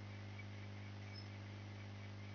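Faint steady electrical hum with a low hiss: the background noise of a recording microphone between spoken phrases.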